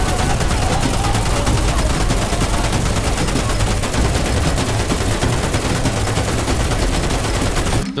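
Rapid, continuous machine-gun fire from a film soundtrack, the shots falling in triplets. It cuts off abruptly near the end.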